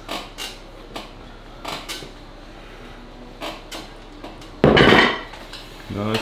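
Metal clicks and clinks from an arm-wrestling back-pressure rig loaded with 50 kg of weight plates during a single strict lift. One loud metallic clatter comes about four and a half seconds in and lasts about half a second.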